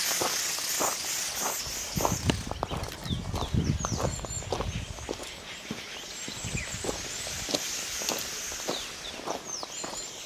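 Footsteps on dirt and gravel from someone walking with a handheld camera, irregular scuffs and crunches with camera handling rumble about two to five seconds in. A few short high chirps sound over a steady hiss.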